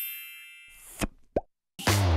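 Cartoon sound effects: a sparkly chime that fades out, then two quick pops, the second a short upward blip. After a brief silence, upbeat funky music starts near the end.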